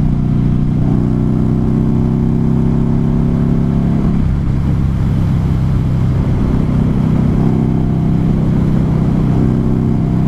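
Buell XB9R Firebolt's air-cooled V-twin engine running under way, with wind noise on the microphone. The engine note holds steady, drops away about four seconds in, and picks up again about three seconds later.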